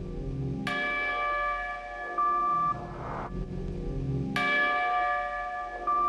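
A bell struck twice, about four seconds apart, each strike ringing on in a cluster of steady overtones.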